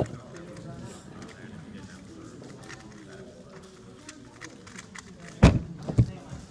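Faint background chatter of a room full of people, with a sharp click at the start and a loud thud about five and a half seconds in as the plastic Moyu GTS v2 speedcube is set down on the mat, followed by a smaller click just after.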